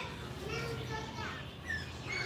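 Children's voices chattering and calling out, high-pitched and without clear words.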